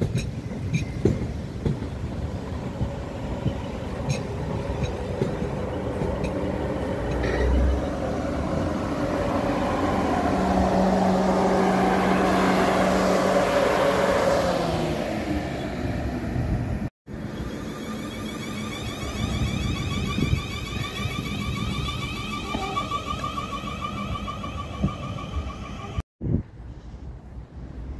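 South Western Railway electric multiple unit running past close by, wheels on the rails with a low steady hum, growing louder to a peak about halfway through and then easing. After a sudden break about two-thirds of the way in, a steady electric whine of several tones carries on.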